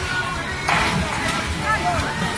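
Dodgem rink ambience: fairground music with voices and calls from riders, and a short, sudden noisy burst just under a second in.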